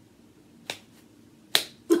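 Three sharp clicks from a person's hands, snapping or clapping for emphasis: a faint one, then two louder ones close together near the end.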